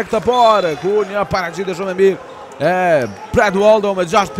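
A voice carrying through a large sports hall, with scattered sharp knocks on the court.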